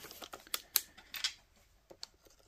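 Half a dozen sharp, irregular metallic clicks and clinks of a ratchet and socket extension being handled on a metal workbench.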